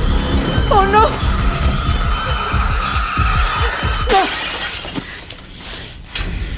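Tense film score with glass jars shattering. A voice cries out briefly about a second in and again near four seconds.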